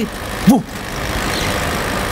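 An aircraft passing overhead: a steady rushing noise that builds slightly. About half a second in, a man gives a short, loud 'ooh'.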